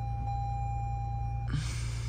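Steady low rumble inside a Toyota minivan's cabin, with a steady high tone that stops about one and a half seconds in, after which a broad hiss comes in.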